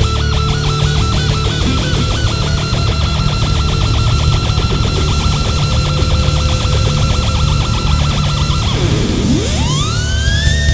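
A rock band playing live, with an electric guitar picking a rapidly repeated high note over a heavy bass and drum rhythm. Near the end the guitar's pitch swoops steeply down and back up into a higher held note.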